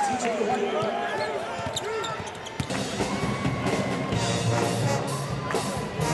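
Basketball game sound: sneakers squeaking on the hardwood court amid crowd noise, then about two and a half seconds in, loud music with a steady beat starts up and keeps going.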